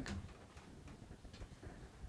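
A few faint, irregular ticks over a low steady hum.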